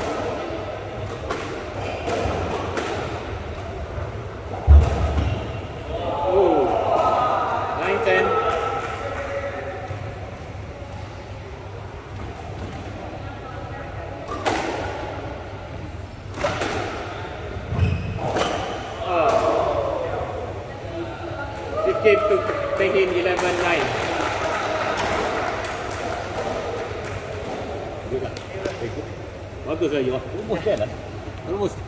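Squash rally: repeated sharp knocks of rackets striking the ball and the ball hitting the court walls, with a heavy thud about five seconds in and a smaller one just past halfway.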